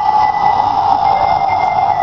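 A single high tone held steady, with a fainter, thinner tone above it.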